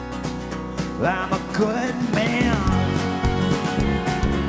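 A live country-folk rock band playing, with strummed acoustic guitar and drums keeping an even rhythm. About a second in, a bending melody line comes in over the band and the sound fills out.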